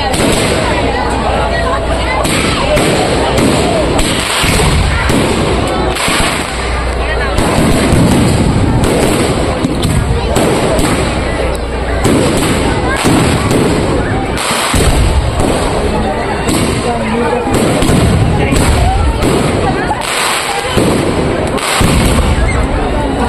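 Aerial fireworks going off in quick succession, a dense, unbroken run of loud overlapping bangs.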